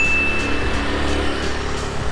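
A motor scooter riding past with its small engine running. A brief high-pitched tone sounds at the start and fades within a second.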